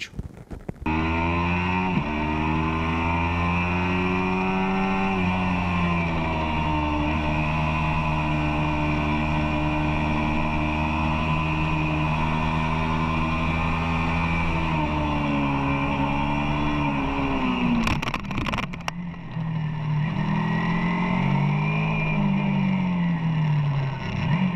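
Kawasaki Ninja 300 parallel-twin engine running under way, recorded onboard the bike, holding steady revs through a bend. About two-thirds through the revs drop, there is a short break with a few clicks, and then the engine revs rise and fall again near the end.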